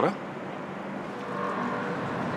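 Steady hum of distant city traffic, growing slightly louder about a second in.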